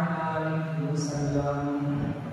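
A man's voice chanting a recitation in long, drawn-out held notes.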